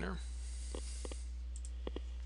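Computer mouse clicks: one, then a quick pair about a second in and another pair near the end, over a steady low electrical hum.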